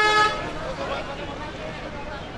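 A single short vehicle horn blast, about a third of a second long right at the start, with people talking over and after it.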